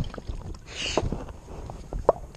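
A small hooked largemouth bass splashing at the surface as it is reeled in, with a brief splashy hiss about a second in and a few sharp knocks.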